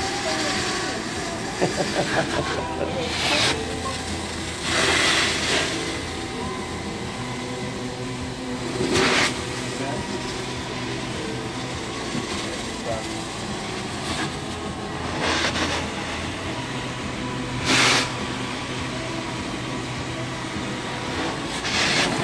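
Truckmount carpet-cleaning extraction wand (Saiger's Zipper wand) on hot-water extraction passes over commercial carpet, a steady vacuum hiss and hum. Several brief louder whooshes break in, a few seconds apart, as the wand rinses and sucks up the cleaning solution.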